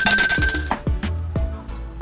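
A bright, bell-like ringing tone made of several steady high pitches, cutting off under a second in, followed by quieter background music with low notes.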